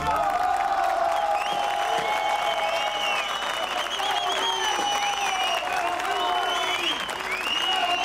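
Theatre audience applauding, with cheering voices over the clapping; it starts as the music stops.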